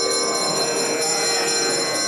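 Temple bells ringing continuously, a dense steady ringing of many high tones.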